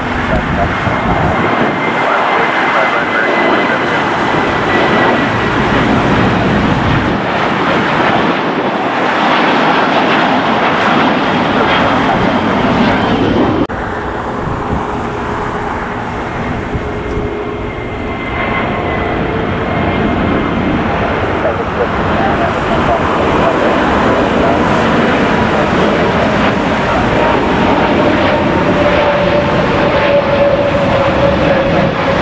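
Jet airliners climbing out after takeoff: a loud, steady jet engine roar with thin whining tones gliding slowly downward as a Boeing 737 passes. About 14 s in the sound drops sharply, then a second jet, an Airbus A320-family neo, builds up again toward the end.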